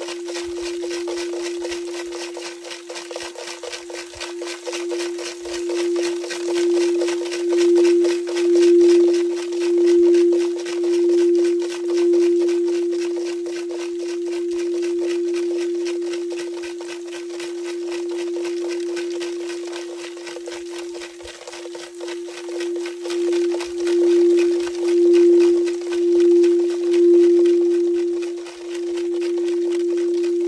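A singing bowl sounding one steady, sustained tone, played around its rim so that it swells and pulses about once a second for two stretches, with a faint steady hiss behind it.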